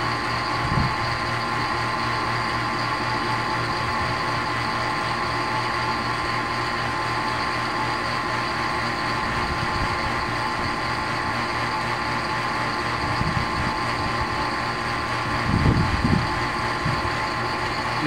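Vacuum pump running steadily, a constant hum with a few steady tones, as it evacuates the refrigerant lines of an emptied split air conditioner.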